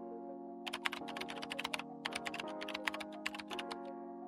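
Background music with held, steady chords, over which a quick, irregular run of computer-keyboard typing clicks plays from about half a second in until near the end, a typing sound effect.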